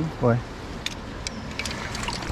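Steady rush of flowing river water close by, with three short sharp clicks spaced about half a second apart in the middle.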